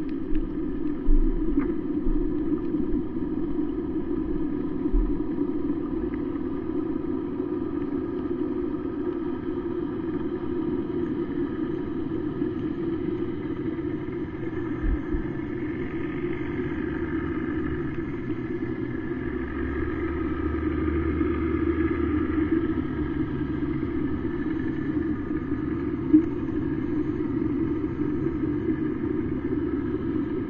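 Steady low engine drone heard underwater, the sound of boat engines carried through the water to a submerged camera, with a few faint clicks and a soft thump along the way.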